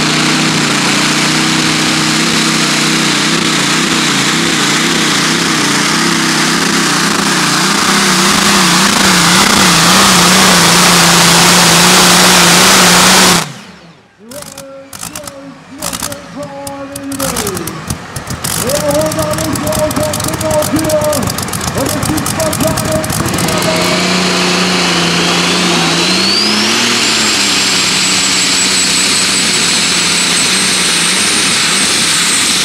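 A custom-built pulling tractor's engine running at full power under the sled's load, loud and steady with a wavering pitch, growing louder until it cuts off abruptly about halfway through. After that come quieter, uneven engine sounds. Near the end another engine runs steadily under a high whine that rises smoothly in pitch.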